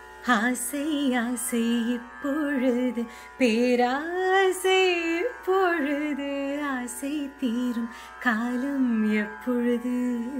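A woman singing a Tamil film-song melody in Carnatic style, pitched in B, in short phrases with gliding ornaments between notes, over a steady drone accompaniment.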